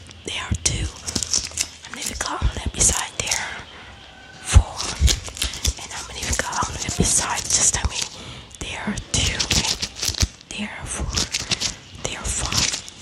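A woman whispering close into a microphone, with one sharp thump about four and a half seconds in.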